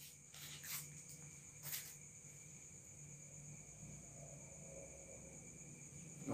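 Near silence with a faint, steady, high-pitched drone of crickets, and two brief soft noises about one and two seconds in.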